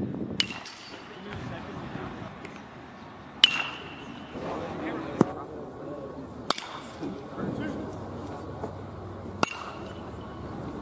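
Metal baseball bat striking tossed balls in batting practice: four sharp pings about three seconds apart, the first two ringing briefly, with a fainter click between the second and third.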